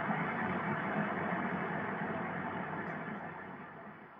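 Steady noise drone from a martial industrial recording, an even rushing wash with no beat or melody. It fades out near the end as the track closes.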